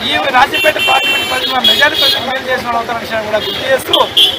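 A man speaking Telugu into a microphone, with vehicle horns honking two or three times in the traffic behind him.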